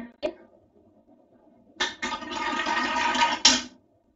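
A marble rolling down the spiral plastic track inside a Big Ouch marble tower toy. It makes a steady rolling rattle that starts suddenly about two seconds in, lasts about two seconds and ends with a click.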